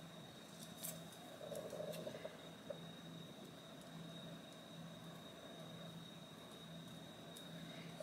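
Small scissors snipping around a paper postage stamp: a few faint, short cuts spread through, over a steady low hum and a thin high whine.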